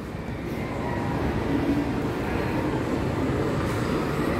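Steady low rumble of shopping-mall background noise.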